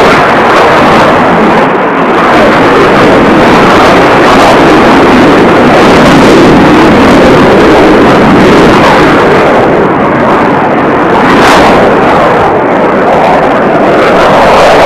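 Eurofighter Typhoon's twin Eurojet EJ200 turbofans: a loud continuous jet roar during a steep climb and pull-over, dipping slightly about two seconds in and again around ten seconds.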